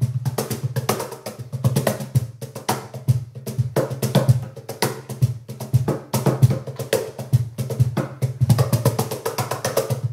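Meinl wooden cajon played by hand in a fast, continuous groove of deep bass tones and sharp slaps. It is miked front and rear at once, so both the finger slaps and snare buzz and the rich bass from the sound port come through.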